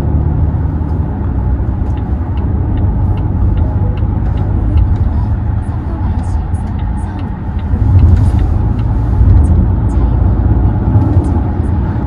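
Road and drivetrain noise inside the cabin of a moving Volvo XC60: a steady low rumble that swells around eight seconds in, with faint light ticks over it.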